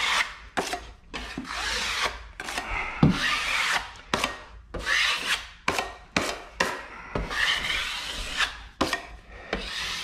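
Metal taping knife drawn in repeated strokes down drywall tape bedded in wet joint compound, scraping off the excess mud. There are short sharp clicks between the strokes.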